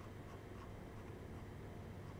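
Faint, irregular small clicks of a computer mouse scroll wheel over a steady low room hum.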